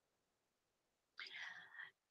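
Near silence, with a faint, brief breath a little over a second in.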